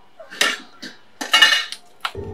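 Metal pots and dishes clattering as they are handled, in two bursts: a short clink about half a second in and a longer clatter with a metallic ring near the middle.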